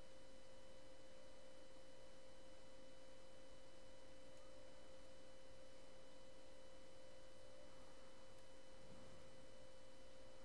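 Faint steady background hum: a single constant tone with fainter higher tones over a low hiss, the recording's own noise floor. There are no other sounds.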